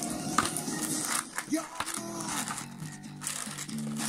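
Background music, with the crinkle of foil booster packs being pulled out of a cardboard display box.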